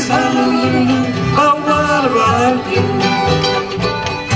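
Live acoustic jug band music: fiddle, banjo and guitar playing a bouncy tune together with a steady rhythmic pulse.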